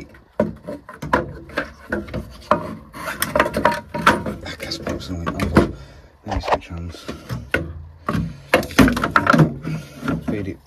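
A new plastic boiler sump being fed up into place under the heat exchanger, knocking and scraping against the casing and pipework in a steady run of clacks and rubs.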